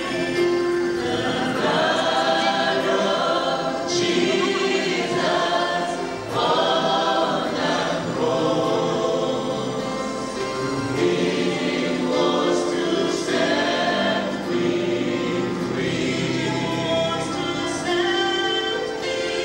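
Church praise team singing a gospel song together, in sung phrases a few seconds long.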